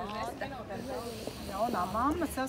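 People talking close by, with overlapping voices; nothing besides speech stands out.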